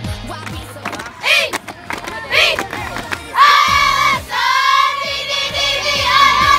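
A pop song plays while a group of girls shout and cheer over it: two short whoops, then two long held yells in the second half.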